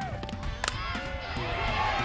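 A softball bat striking the ball once with a sharp crack about two-thirds of a second in: a hit for a home run. Background music plays throughout.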